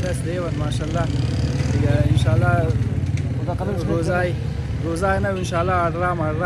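Men talking, with a steady low engine rumble of street traffic underneath the voices.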